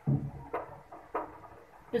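A few light knocks and clunks of kitchen things being handled on the counter beside the stove, about half a second apart.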